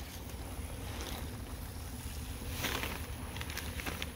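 Steady low rumble of wind on a phone's microphone, with a brief faint rustle a little past halfway.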